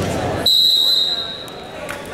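A referee's whistle sounding one steady, shrill blast of about a second, starting about half a second in.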